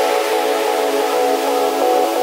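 Electronic dance music in a breakdown: a sustained synth chord held over a hiss of noise, with the kick drum and bass dropped out.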